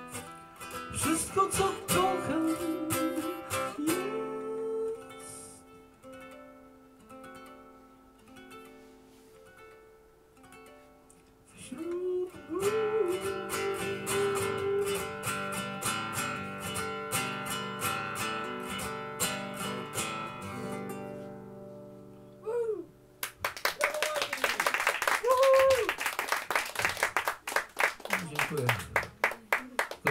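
A man singing to a nylon-string classical guitar, closing the song on a long held note and chord that fade out about 22 seconds in. Audience applause follows from about 23 seconds to the end.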